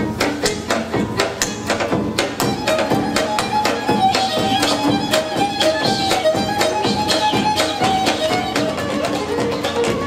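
Moldavian Csángó dance music: a fiddle playing a fast melody over a strummed koboz (short-necked lute) and a large double-headed drum struck on a quick, steady beat.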